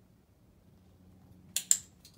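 Dog-training clicker pressed near the end, a sharp double click of press and release, marking the puppy's eye contact.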